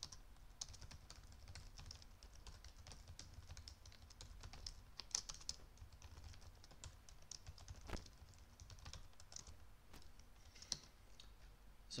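Faint computer keyboard typing: an irregular run of quick key clicks, with a few slightly louder strokes.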